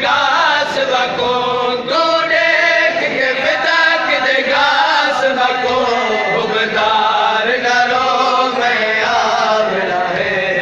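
A group of men chanting a nauha, a Shia lament, together.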